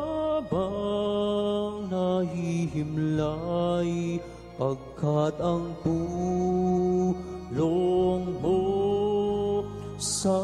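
Slow hymn music: long held sung notes that slide into each new pitch, over a steady sustained accompaniment, phrase after phrase with short breaks between.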